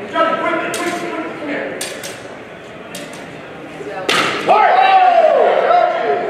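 Steel longsword blades clashing in a fencing exchange: several sharp, separate strikes over the first four seconds. About four seconds in comes a harder strike, followed at once by a loud drawn-out shout.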